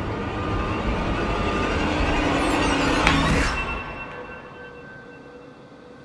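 Hiss of gas escaping as the cap of a bottle of fermented passion fruit pulp is twisted open, building for about three seconds and then fading away. The bottle vents without bursting.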